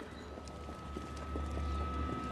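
Film sound mix: light footstep taps of shoes on a paved path over a low, steady drone with a thin high tone held above it.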